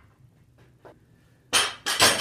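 Steel barbell being pulled out of a stack of iron weight plates and set down, giving two short metal clanks and scrapes near the end after a quiet start.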